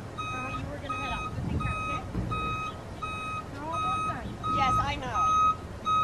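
A vehicle's reversing alarm beeping, a steady high beep repeating about every two-thirds of a second.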